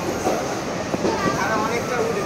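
Passenger train running, heard from inside a sleeper coach: a steady noise of the moving carriage, with people talking over it.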